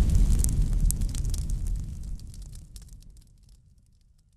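A deep rumbling boom with light crackling, a fire-and-explosion sound effect, dying away over about three seconds.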